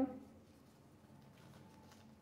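Faint rustling of a thin paper napkin being torn by hand, with a few soft crackles over a low steady room hum.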